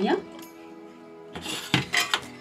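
Soft background music with steady tones. About a second and a half in comes a brief clatter of a few knocks: garlic cloves dropping into a pan of oiled onions.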